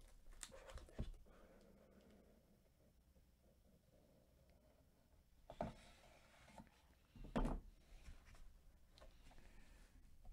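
Faint handling of a cardboard card box: the lid lifted off and a plastic card case taken out, with a few soft knocks, the loudest about five and a half and seven and a half seconds in, and near silence between them.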